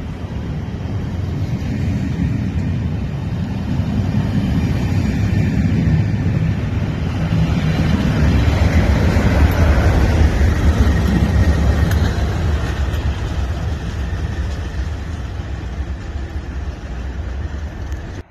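Train passing at speed: the rumble of the yellow test-train coaches' wheels, then a Colas Rail Class 37 diesel locomotive (English Electric V12 engine) going by close with its engine running. The noise builds to its loudest about halfway through as the locomotive passes and then eases off as it draws away.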